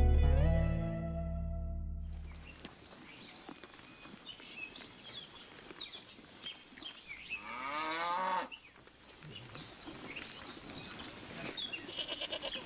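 Title music fades out in the first two seconds, giving way to quiet outdoor ambience with faint high chirps. About seven and a half seconds in, a cow moos once, a call of about a second that rises and falls in pitch.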